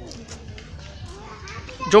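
Faint background chatter of people's and children's voices, with a nearby man's voice starting loudly near the end.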